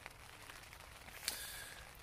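Light rain falling faintly on the fabric of a tent, heard from inside, a steady soft hiss that grows a little louder after about a second.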